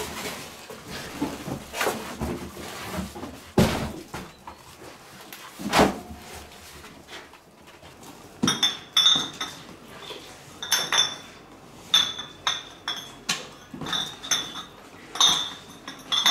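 Empty glass beer bottles clinking and knocking together as they are packed into cardboard boxes, a run of bright ringing clinks through the second half. Earlier come rustling and a few dull thumps of scrap cardboard being shifted.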